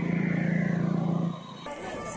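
A motor vehicle's engine running steadily, cutting off abruptly about one and a half seconds in; faint voices follow near the end.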